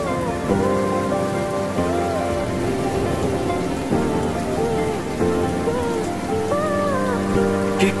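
Rain sound effect, a steady patter of rain, layered over a soft, slow music intro; the rain starts suddenly at the beginning. A male voice begins singing the first line at the very end.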